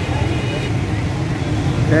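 Steady low street rumble of road traffic, with a faint high tone for the first half-second or so.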